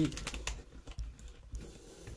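Irregular light clicks and taps of handling noise, as a handheld camera is moved about and set down.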